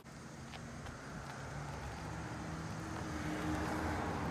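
A car engine idling, a steady low hum that grows slowly louder.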